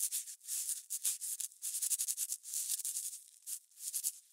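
Pencil scribbling on paper: a quick, uneven run of short scratchy strokes, several a second.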